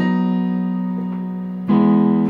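Yamaha Portable Grand digital keyboard in its piano voice: a chord of E octaves in the bass under F sharp, B and D sharp is held and slowly fades. A second chord is struck near the end.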